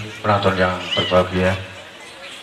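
A man speaking in short phrases. About a second in, a brief high-pitched call rises and falls.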